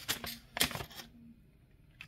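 Sheets of paper being handled: a few short rustles and taps in the first second, then near quiet.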